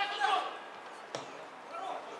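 A football kicked once with a sharp thump a little over a second in, between shouts from players on the pitch, the loudest of them at the start.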